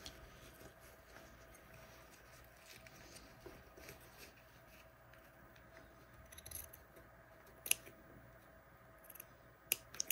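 Small scissors quietly snipping into the seam allowances of a faux-leather jacket front, a scatter of soft snips with one sharper click about three-quarters of the way in.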